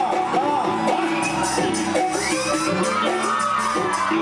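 A man singing live into a microphone over a backing band with drums and keyboard, a steady percussion rhythm running under the voice.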